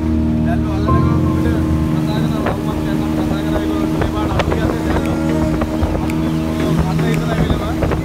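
Outboard motor of a small fibreglass fishing boat running at a steady pitch while under way, an even drone throughout.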